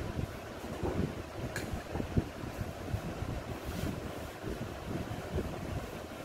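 Uneven low rumbling and buffeting on a headset microphone, like wind or rubbing on the mic as the wearer moves, with a couple of small knocks about one and a half and two seconds in.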